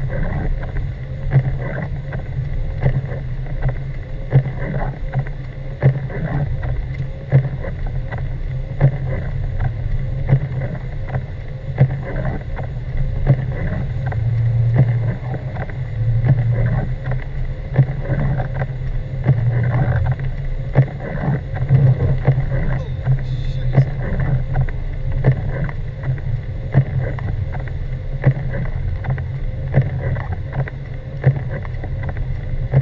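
Car cabin noise while driving on a snow-covered road: a steady low rumble of engine and tyres. A light knock repeats about every second and a half.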